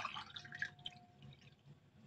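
Faint handling sounds at a steel pot: a soft knock at the start, a brief faint ringing tone for about a second, then scattered small ticks.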